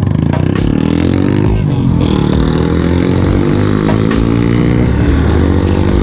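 Motorcycle engine pulling away from a standstill. The revs climb, fall and climb again about two seconds in as the gear changes, then hold fairly steady.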